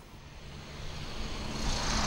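Street traffic: a car passing by, its noise building steadily to a peak near the end.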